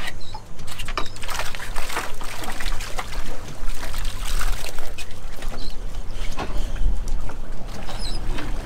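Water splashing and dripping as a dip net scoops live baitfish out of a boat's livewell, with irregular small splashes over a steady low rumble.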